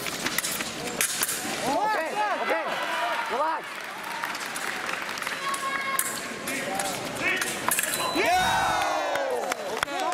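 A sabre fencing exchange: sharp clicks of blades and footwork, with shouts a couple of seconds in, and one long falling yell near the end as the touch is decided.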